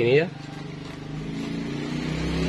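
A vehicle engine running steadily in the background, growing louder from about a second in.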